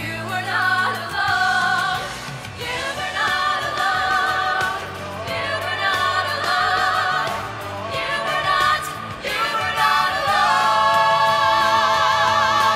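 A small mixed vocal ensemble singing a musical theatre song in close harmony, with vibrato on held notes, over a low sustained accompaniment. The voices swell to their fullest near the end.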